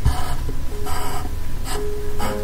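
Wooden pencil scratching across paper in three short strokes, over soft background music with held notes.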